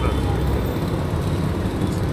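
Steady low rumble of road traffic, with no single vehicle standing out.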